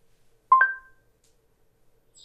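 Google Home Hub's two-note rising chime, about half a second in and quickly fading. It is the Google Assistant acknowledging the spoken "start day" command before it answers.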